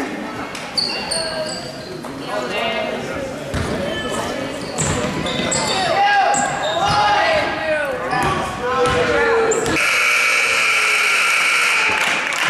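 Indoor basketball game: a basketball bouncing on a hardwood gym floor amid shouting voices, echoing in the hall. About ten seconds in, the scoreboard buzzer sounds with a long, steady blare, the horn as the game clock runs out.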